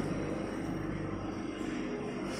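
Steady low machine hum with a few faint constant tones, no strokes or clicks of the pad printer itself.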